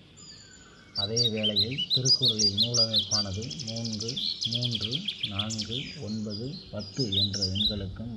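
Small birds chirping and twittering in short high notes, with a fast trill in the middle. A person's voice runs over them from about a second in, above a steady low hum.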